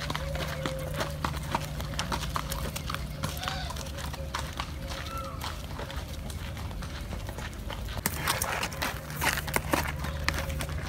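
A horse's hooves striking a dirt track at a walk, a steady run of hoofbeats, with people's footsteps alongside. The hoofbeats get louder near the end as the horse passes close by.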